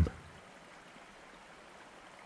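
Faint, steady running-water ambience, like a gently flowing stream, under a pause in the narration.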